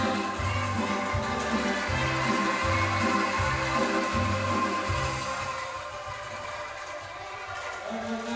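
A large group of bamboo angklung shaken together, playing a tune over music with a steady, repeating bass pulse; the music fades away after about five seconds and is quieter near the end.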